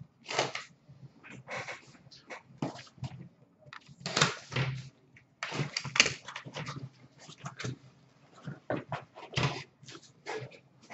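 Cardboard shipping case being torn open by hand: flaps and tape ripped and cardboard scraped and rustled in irregular bursts, then the sealed boxes inside slid out.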